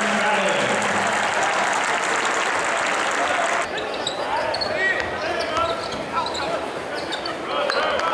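Indoor basketball game sound: crowd and voices filling the gym. A little before halfway the level drops suddenly to quieter court sound, with short squeaks of sneakers on the hardwood and a basketball bouncing.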